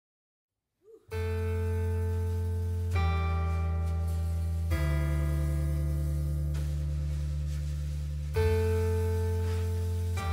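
A live band's instrumental intro: sustained chords start about a second in and change every two to three seconds, with no singing yet.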